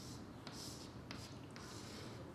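Chalk writing on a chalkboard, faint: scratchy strokes with a couple of sharp taps as the letters are formed.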